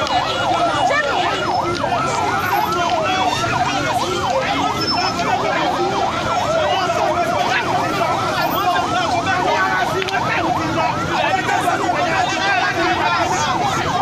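Police vehicle siren sounding a fast yelp, its pitch sweeping up and down a few times a second without a break.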